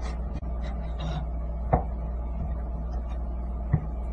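Chef's knife thinly slicing raw beef on a wooden cutting board: soft taps of the blade on the board, with two sharper knocks, one about halfway through and one near the end. A steady low hum sits underneath.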